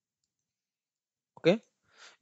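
Dead silence for over a second, then a single short click just before a voice says "okay" near the end.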